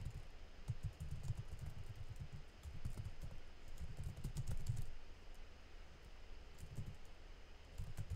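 Typing on a computer keyboard: a quick, irregular run of keystrokes, with a brief lull a little past halfway.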